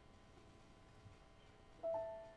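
Faint room hush, then near the end a piano chord is struck suddenly and rings on, fading.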